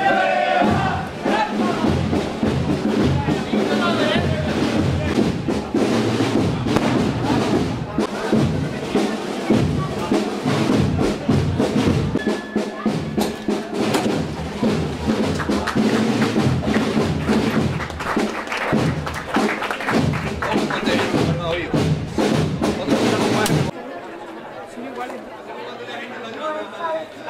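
Procession band music with a steady drum beat over crowd voices. It cuts off abruptly near the end, leaving quieter crowd chatter.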